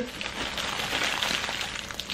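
Soft, continuous crinkling of a clear plastic wrapper being handled and unwrapped.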